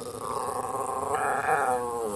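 Norwich Terrier 'talking': one long, unbroken vocalization that rises in pitch and grows louder past the middle, then drops near the end. It is the dog's way of asking for lunch.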